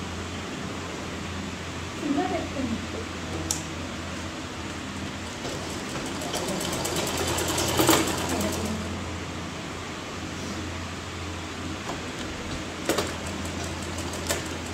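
Domestic sewing machine stitching a seam, building to a fast run of stitches in the middle and easing off, with a few short clicks near the end over a steady low hum.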